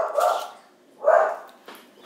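A dog barking twice, about a second apart.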